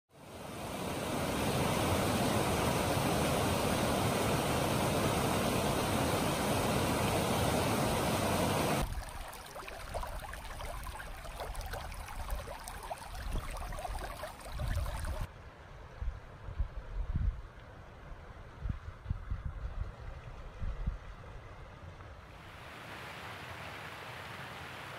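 Steady rushing of a stream fades in over the first second or two and runs for about nine seconds. It then gives way to quieter outdoor ambience with softer water sound and irregular low rumbles. Near the end it drops to a faint steady hiss.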